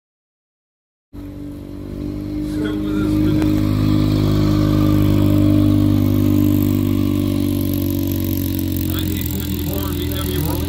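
Engine of a rotary (Wankel) Corvette concept car running as it drives slowly past, a steady low note that starts suddenly about a second in and builds in loudness.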